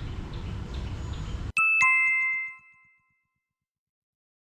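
Outdoor ambience with a low rumble and faint chirping cuts off abruptly. It is followed by a two-note descending chime sound effect, ding-dong, that rings out and fades within about a second and a half.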